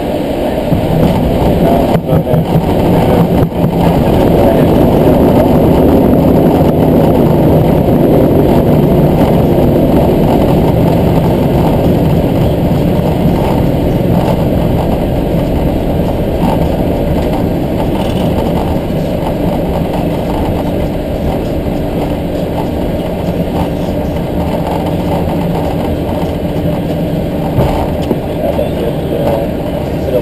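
Airbus A320-family airliner on its landing roll, heard from the cockpit: a loud, low roar of engines and runway rumble that builds over the first few seconds and then slowly fades as the aircraft slows.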